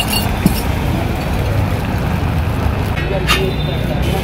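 Steady street rumble with a few short metallic clicks and scrapes of a spatula on an iron griddle. The longest scrape comes about three seconds in, as an omelette is lifted off the hot plate.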